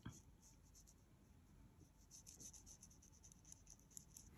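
Faint, soft scratching of a fine paintbrush laying ink onto paper in short, repeated strokes, closer together in the second half.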